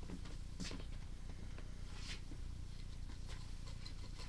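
A sewer inspection camera's push cable being fed into a drain line: a few faint, scattered clicks and scrapes over a steady low hum.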